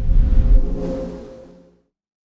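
Logo sting of a news channel's closing ident: a deep, rumbling whoosh with a held musical tone that swells to its peak about half a second in, then fades out before the end.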